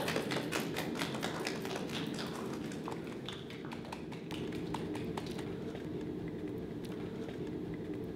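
A small group of people clapping by hand. The claps are dense at first, then thin out and die away about five seconds in.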